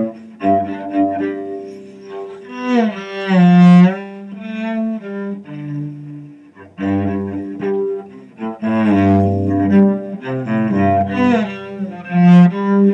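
Solo cello, bowed, playing a melody with sliding notes over low notes.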